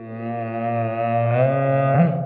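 One long, low tone with many overtones, held steady and then stepping slightly up in pitch about two-thirds of the way through before it stops.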